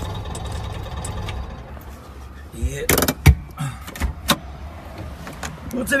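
Trabant's two-stroke two-cylinder engine idling, then cutting out about two seconds in; the engine must not stall, as it will not restart without a push. A sharp knock follows about a second later, then a few lighter clicks.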